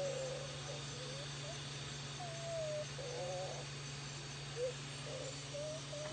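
Faint, brief, wavering vocal sounds, several short indistinct cries or murmurs, over a steady low hum.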